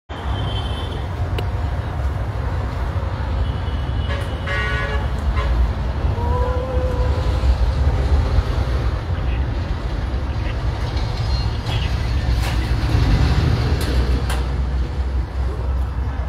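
Road traffic with a steady low rumble, and a short vehicle horn toot about four and a half seconds in. Faint voices are mixed in.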